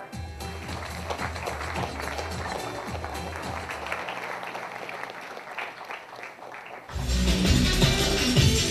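Audience applause over background music; about seven seconds in, it cuts abruptly to much louder music with a strong bass beat.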